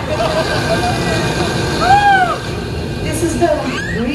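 Racing sound effects from an animated film clip played over a theatre's speakers: a steady low rumble, with one rising-and-falling whistle-like tone about halfway through and short voice-like sounds near the end.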